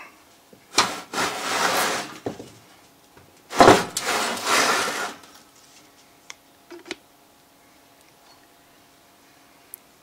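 The metal case of a vintage battery charger dragged and scraped across a workbench twice as it is turned round, each scrape lasting about a second and a half, followed by a few light knocks.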